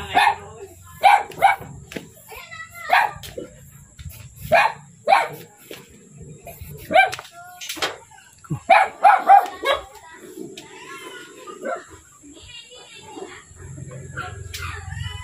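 A dog barking repeatedly in short single and double barks through the first ten seconds, with a quick run of barks about nine seconds in.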